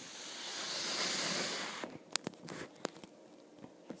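Handling noise: a rustling hiss of a cloth sleeve brushing close to the microphone, swelling and fading over about two seconds. It is followed by a few light, sharp clicks.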